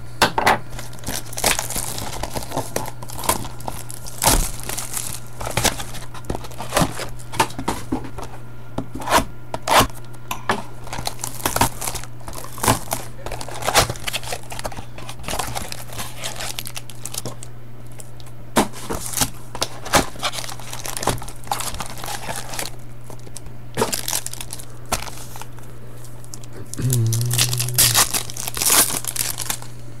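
Plastic shrink wrap crinkling and tearing as a sealed trading-card box is unwrapped and opened, in a run of irregular sharp crackles.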